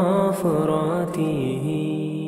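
A solo voice chanting a slow melodic line, holding long notes that bend and then slide down to a lower note partway through.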